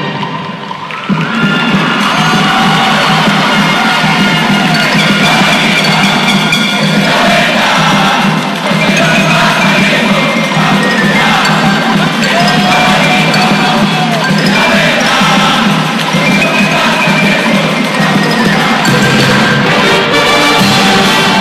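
Crowd cheering and shouting, with higher children's voices among it, over a school marching band's brass and percussion. The music dips at the start and comes back fully near the end.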